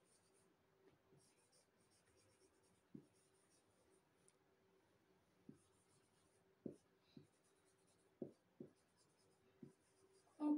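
Marker pen writing on a whiteboard: faint scratchy strokes in short stretches, with a few soft knocks as the tip meets the board.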